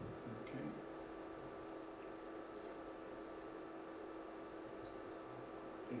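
Quiet room tone with a steady low electrical hum, and a couple of faint short high squeaks about five seconds in.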